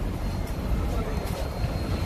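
Steady low rumble of city street noise, traffic on the road beside the table, with no distinct separate event.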